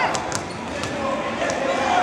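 Basketballs bouncing on a hardwood court, a few sharp bounces, over the steady chatter of a crowd.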